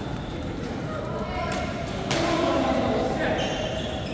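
Badminton racket striking a shuttlecock, a sharp smack about two seconds in after a fainter hit, ringing in the large hall, over background voices.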